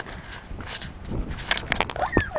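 Wind buffeting a handheld camera's microphone, a low rumbling rush with rustling handling noise, and a quick run of sharp clicks about a second and a half in.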